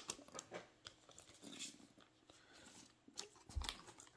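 Faint, scattered rustles and light clicks of plastic penny sleeves being handled, as a sleeve is taken out for a trading card.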